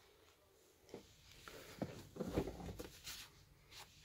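Faint handling sounds in a van cab: scattered light clicks, rustling and a few soft knocks, starting about a second in after near silence.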